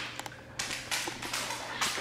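Faint rustling and a few light taps, like handling noise from a camera or containers being moved about.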